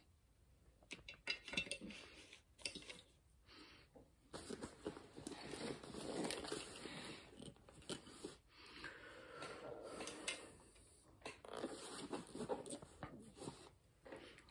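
Hands rummaging through a fabric bag for an item: irregular rustling and crinkling with scattered small clicks and knocks of the gear inside.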